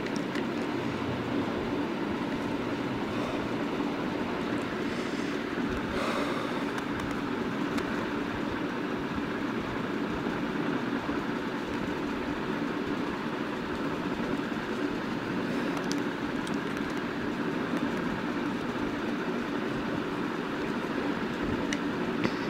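Steady background noise with a faint low hum, even throughout; no distinct handling sounds stand out.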